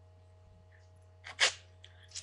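A person sneezing once, a short sharp burst about one and a half seconds in, over a steady low hum.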